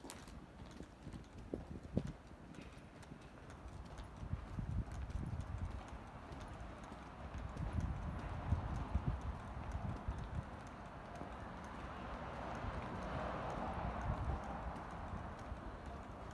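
Footsteps walking on a paved street in an even rhythm, over a low steady city background hum that grows a little louder near the end.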